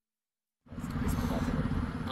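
Dead silence for about half a second, then a steady low rumble with hiss from road traffic passing on the highway beside the microphones.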